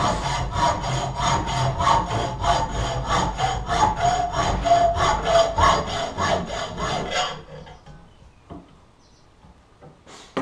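Hand hacksaw cutting a welded steel footpeg bracket held in a bench vise, in quick, even back-and-forth strokes with a ringing tone from the metal under them. The sawing stops about seven seconds in as the badly welded piece comes off, followed by a couple of faint knocks.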